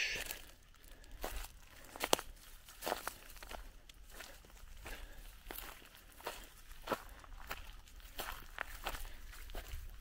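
Footsteps on dry grass and fallen leaf litter: a faint, irregular series of soft crunches and crackles as someone walks slowly along a gully.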